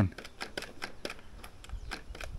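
A run of light, irregular clicks, several a second, with no motor running: the start control of a Gardena 380AC cordless reel mower being worked while its motor fails to start.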